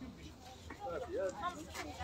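Faint, indistinct voices of people talking in the background, with no single clear speaker.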